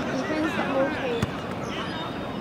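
Rugby players' voices calling and talking across the pitch, with one sharp thump just past halfway.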